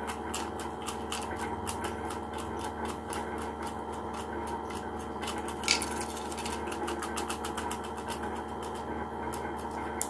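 Rolled paper slips rattling inside a clear plastic bottle shaken by hand, a fast, even run of light taps and clicks against the plastic, with one louder knock a little past halfway.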